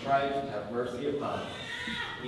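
Voices in a church, with pitches held in long, drawn-out notes rather than quick speech syllables.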